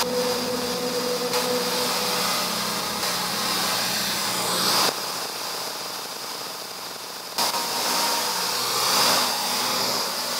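Mountain bike rolling over a dirt singletrack, with wind rushing over the camera's microphone: a steady rushing noise that jumps sharply in level several times.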